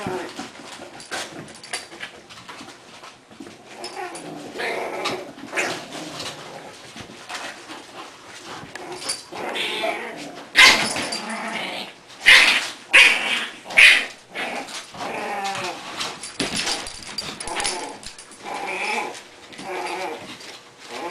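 English bulldog puppies playing with an adult bulldog, growling and whining, with a few short loud cries about halfway through.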